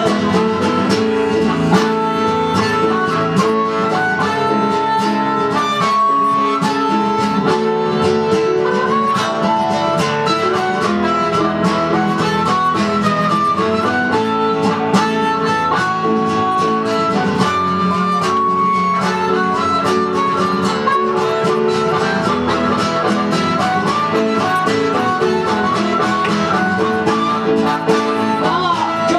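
Blues harp (diatonic harmonica) playing the lead melody over a strummed acoustic guitar, a live instrumental break with no singing.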